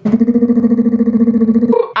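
Game-show style 'wrong answer' buzzer sound effect: a flat, unwavering buzz that starts abruptly and cuts off sharply after about a second and three-quarters.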